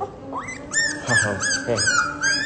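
A very young puppy, under a month old, whimpering in a string of short, high squeals, about five of them, starting about halfway in.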